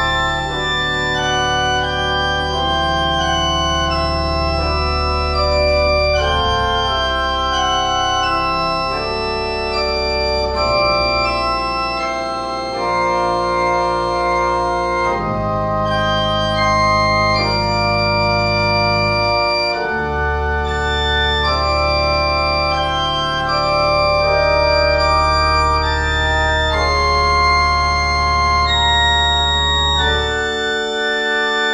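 Church organ playing sustained chords on the manuals over long pedal bass notes. The melody sits in the middle of the texture, with dissonant chords thrown in around it. The pedal bass drops out briefly a little before the two-thirds mark, then returns.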